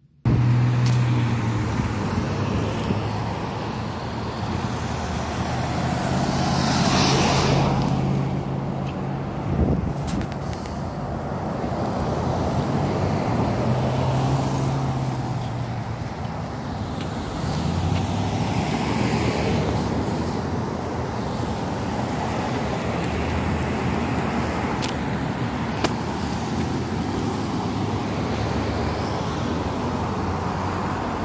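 Road traffic passing close through a roundabout: steady tyre noise and engine hum from cars and pickup trucks, swelling and fading as each vehicle goes by, one passing loudest about seven seconds in. A short knock near ten seconds.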